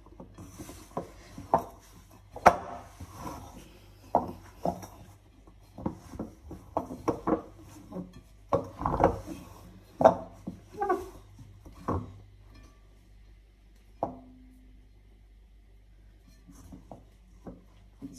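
Hands mixing wet poori dough in a glass bowl: irregular knocks and clicks of fingers and dough against the glass, with soft squishing, thinning out after about twelve seconds.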